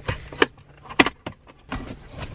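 Plastic clips of a Chevy Colorado's center-console trim bezel snapping loose as it is pried up with a plastic trim-removal tool: a few sharp clicks, the loudest about half a second and a second in.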